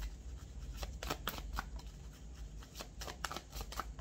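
Tarot deck being shuffled by hand: a run of soft, irregular clicks of cards slipping against one another.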